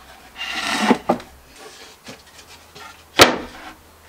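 A wooden drawer box being turned over by hand, a short scrape of wood in the first second, then set down on a wooden pallet workbench with one sharp knock about three seconds in.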